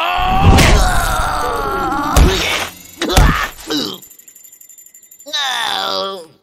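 A cartoon voice shouting at length, with heavy thuds about half a second, two seconds and three seconds in, then a groan falling in pitch near the end.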